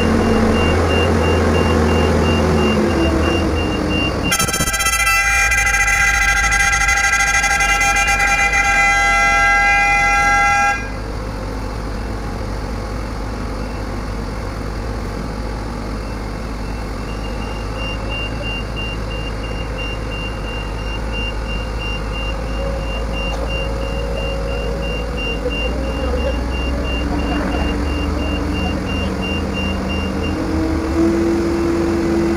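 A long, steady horn blast lasts about six seconds and cuts off abruptly. Under it, heavy mobile-crane diesel engines run steadily, and a rapid high-pitched warning beep repeats in the background before and after the horn.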